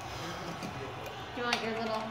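Kitchen background noise with a single sharp click about one and a half seconds in, then a man's voice starting to speak near the end.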